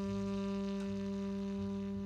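Tenor saxophone holding one long low note, steady in pitch, in a live jazz trio, with a bass plucking short low notes beneath it.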